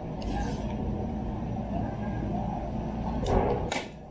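G&G SMC9 airsoft gun being handled for a magazine release: a short scrape just after the start, then two sharp clicks about half a second apart near the end, over a steady low hum.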